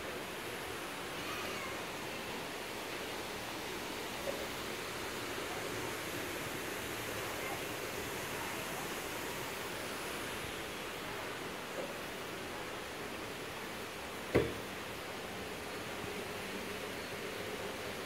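Steady, even rushing air noise with no rhythm or pitch, and one sharp click about fourteen seconds in.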